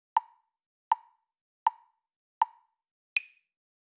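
Five short, evenly spaced clicks like a metronome count, about 80 a minute; the first four are on one pitch and the fifth is higher.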